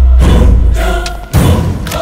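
Dramatic film score with a chanting choir over a sustained low boom, and a heavy thud about one and a half seconds in.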